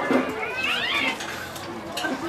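A single cat-like yowl about half a second in, gliding up and then down in pitch and lasting about half a second.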